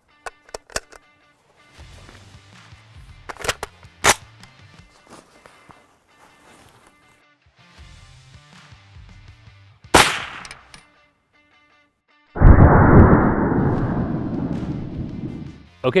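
.308 AR-10 rifle with a 16-inch barrel: a few sharp metallic clicks from handling the rifle, then a sharp shot about ten seconds in. The loudest sound follows about twelve seconds in: a sudden deep boom that fades out over some three seconds. Faint background music runs underneath.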